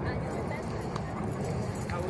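Indistinct background voices of people and children playing, mixed with the sounds of dogs moving about.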